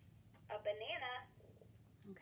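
GoTalk 9+ communication device playing back a woman's recorded voice through its small built-in speaker. One short phrase starts about half a second in, triggered by pressing a symbol button, and sounds thin, with the top of the voice cut off.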